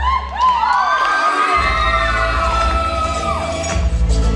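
Several high-pitched voices rise together into a long held cry lasting about three seconds, in a break in the Tahitian drumming. Low drumming comes back in about a second and a half in.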